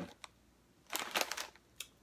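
Brief rustle of a plastic potato chip bag being handled, about a second in, with a few light clicks before and after.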